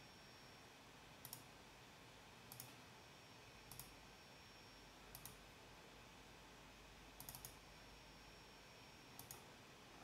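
Near silence with faint, scattered clicks from a computer mouse and keyboard: single clicks every second or so, and a quick run of three or four about seven seconds in.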